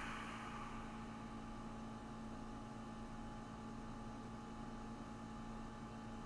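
Faint room tone: a steady low electrical hum with an even hiss.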